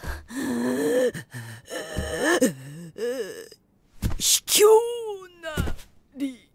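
Voice actors' strained wordless cries, grunts and gasps of effort in a comic fight, ending in a long falling cry about five seconds in.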